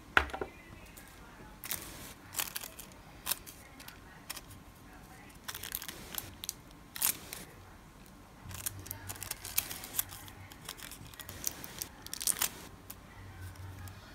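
A sharp click just after the start, then irregular short crinkles and crackles of a thin sheet of nail stamping foil being handled and pressed against a nail.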